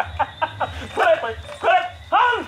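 A man's voice chanting in a quick run of short, wordless yelping cries with sliding pitch.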